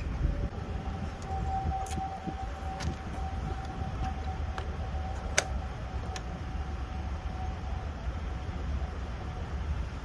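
A few sharp clicks and knocks from the GD8000 rugged laptop's latch and lid being opened by hand, the loudest about five seconds in. Under them run a steady low rumble and a faint, even high tone.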